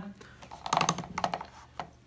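Plastic desk fan being handled to tilt it: a quick run of light clicks about a second in, with a few single clicks around it.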